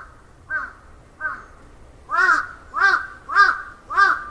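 A crow cawing repeatedly, about six caws roughly every half second or so, the last four louder.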